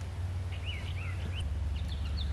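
A bird giving a few short chirps about a second in, over a steady low hum.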